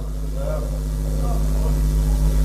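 Steady electrical hum with a deep low drone, growing gradually louder, under faint indistinct speech.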